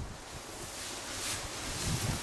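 Steady hiss of wind and light drizzle on the microphone, with the rustle of a nylon puffer jacket being shrugged off and a soft low thump near the end.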